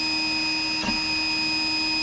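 MakerGear M2 3D printer running a print: a steady whine from its stepper motors and cooling fan, with one brief blip in the motor sound just under a second in.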